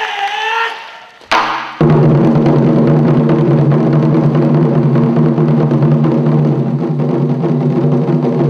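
A troupe playing large Chinese barrel drums: a single stroke about a second in, then from about two seconds a loud, continuous, fast drum roll with a steady low ring.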